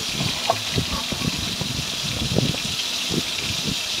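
Spiced brinjal (eggplant) slices shallow-frying in oil in an iron kadai, a steady sizzling hiss with small crackles.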